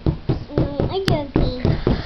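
Short, broken bits of a young child's voice, with a few sharp clicks among them, the sharpest about halfway through.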